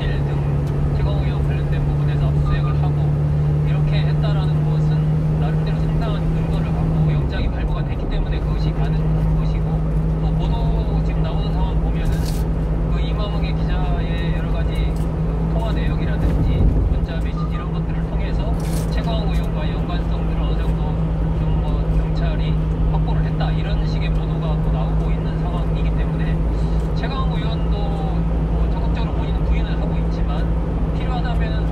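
Engine and road noise heard from inside the cab of a 1-ton refrigerated box truck at expressway speed: a steady drone whose engine hum drops in pitch about seven seconds in. Radio news talk plays over it.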